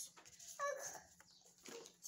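A chicken clucking, one short call about half a second in that falls in pitch, with a fainter sound near the end. Light clicks from tarot cards being handled sound alongside.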